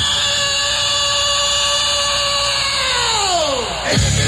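A single held buzzing tone with many overtones. It holds steady for about three seconds, then slides down in pitch like a tape slowing to a stop, and ends abruptly as rock music comes back in.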